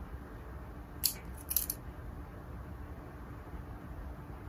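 Cotton fabric rustling as it is bunched and pinned by hand, with a few short crisp rustles about a second in and again half a second later, over a faint low room hum.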